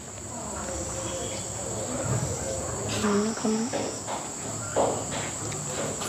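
Crickets trilling, a steady high-pitched tone that runs on unchanged, with a brief low murmur of voices about three seconds in.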